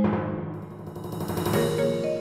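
Percussion quintet music: a timpani roll under a rolled cymbal that swells and builds, with mallet-keyboard chords coming in about one and a half seconds in.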